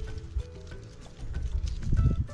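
Background music: a melody of held notes, with a low, knocking beat that grows stronger toward the end.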